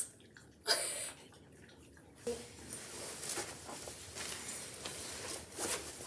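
Fabric rustling from a padded Selk'bag sleeping-bag onesie being handled and pulled on: a short loud swish about a second in, then softer swishes on and off.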